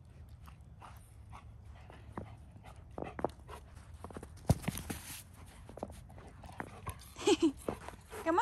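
A golden retriever moving close by in snow: a scatter of small crunches and scuffs, with one louder knock and rustle about halfway through and a brief vocal sound near the end.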